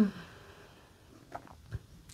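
A woman's voice trails off in a falling 'hı-hı' at the very start. Then there is quiet room tone, with a few faint soft clicks about a second and a half in.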